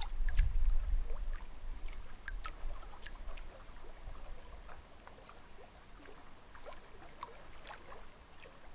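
Small lake waves lapping against shore rocks, with scattered little splashes and plinks. A low rumble is heard in the first couple of seconds and dies away.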